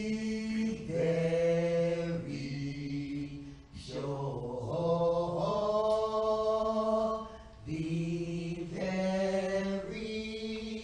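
A single voice sings a slow sacred song in long held notes, stepping from pitch to pitch, with short breaks between phrases.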